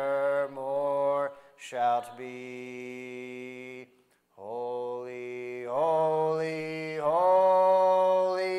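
Small congregation singing a hymn unaccompanied, holding long notes. Singing stops briefly about four seconds in as one verse ends, then the next verse begins.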